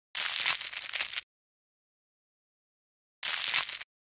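Dental scaler scraping and crackling against hard deposits on a tooth, in two sharp bursts: one about a second long near the start and a shorter one about three seconds in, each cut off abruptly with dead silence between.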